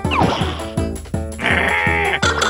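Cartoon background music with a steady beat, with a short falling cartoon sound effect just after the start and a high, strained character vocal sound in the second half.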